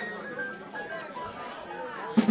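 Murmured chatter of club patrons and musicians between tunes, several voices overlapping with no one voice standing out.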